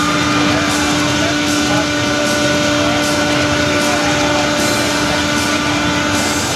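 Loud fairground noise with a steady, even drone held underneath it.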